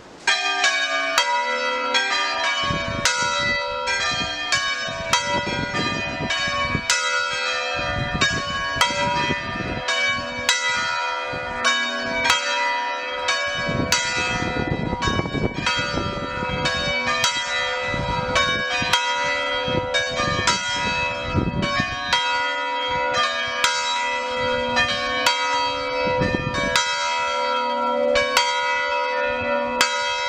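A concert of four swinging church bells tuned in B, cast by Silvio Mazzola (1897) and Bartolomeo Bozzi (1743), ringing a solemn peal. The bells start suddenly just after the beginning, then strike in turn at about two strokes a second, their tones overlapping and ringing on.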